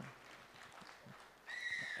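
A pause in the speech with only faint hall noise, then a short high whistle about a second and a half in, falling slightly in pitch and lasting about half a second.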